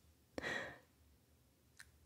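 A woman's soft breath, close to the microphone, about half a second in, then a faint click near the end.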